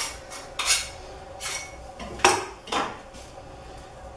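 Spatula scraping body filler (massa plástica) on a flat board: about half a dozen short scraping strokes at uneven intervals, the loudest a little past the middle, as a portion of filler is worked before the catalyst goes in.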